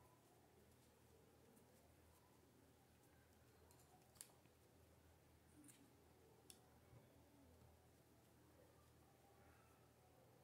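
Near silence with a few faint, sharp clicks, the clearest about four seconds in and another about six and a half seconds in: small scissors snipping and being handled while trimming the end of T-shirt yarn on a crochet piece.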